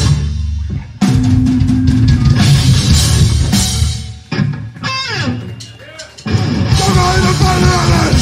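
Punk rock band playing live, with drum kit, bass and distorted electric guitars: one song ends with loud full-band hits, then a couple of seconds of thinner sound with falling, sliding tones. The whole band comes crashing in on the next song about six seconds in.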